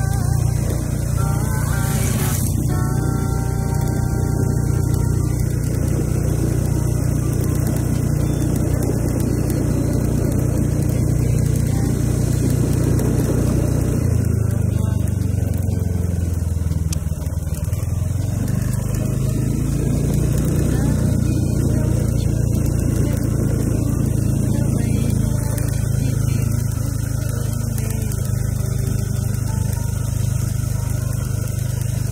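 Motorbike engine running steadily while riding along, its note dropping and then climbing back around the middle. Another motorbike passes close about two seconds in.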